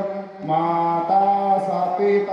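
A priest chanting Sanskrit puja mantras in long, steadily held notes, with a brief break for breath about half a second in before the chant carries on.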